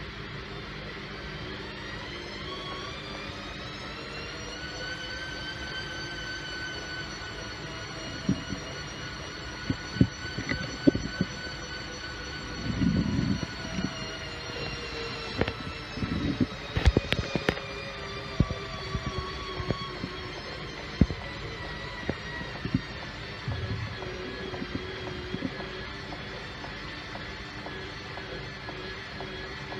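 Front-loading washing machine on a wash tumble: the drum motor whines as it speeds up over the first few seconds, holds steady, then winds down about two-thirds of the way through. Irregular thumps and knocks come from the wet laundry dropping in the drum.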